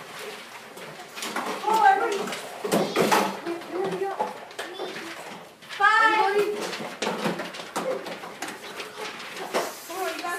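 Children's voices calling out over one another in a classroom, loudest about two seconds in and again about six seconds in, with papers rustling between them.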